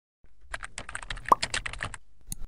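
Computer keyboard typing sound effect: a quick run of key clicks, about ten a second, starting a quarter to half a second in, with one much louder click a little past the middle.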